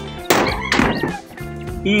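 Background music with singing, over which a claw hammer strikes nails into corrugated metal roofing sheets a few times.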